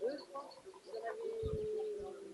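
Faint outdoor ambience of short bird chirps and distant voices. About halfway through, a single steady held call starts and lasts about a second, with a couple of low thumps beneath it.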